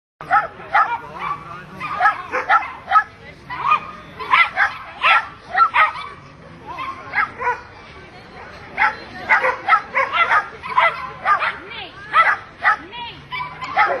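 Parson Russell terrier yipping and barking over and over in quick, short bursts, the excited noise of a dog held back before an agility run, with a lull of a couple of seconds in the middle.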